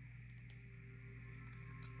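Quiet room tone with a steady low electrical hum and a few faint ticks.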